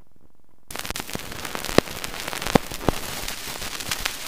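Surface noise of a 1931 Columbia 78 rpm shellac disc as the needle runs in the lead-in groove. A faint low hum gives way, under a second in, to steady hiss with dense crackle and three loud pops.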